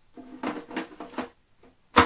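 A foam filter pad rubs with short squeaks against the plastic walls of a Superfish Aqua Pro 600 canister filter as it is pushed down inside. Near the end a single sharp knock sounds as it seats.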